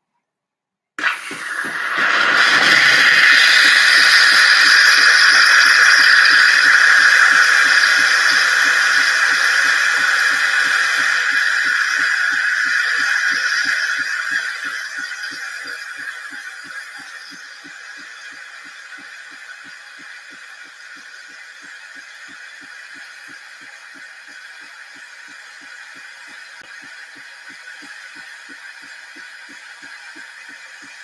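Philips Series 3100 automatic espresso machine frothing milk through its milk carafe for a cappuccino. A loud steam hiss starts about a second in. After about 14 s it eases to a quieter steady hiss, with a fast regular pulsing underneath.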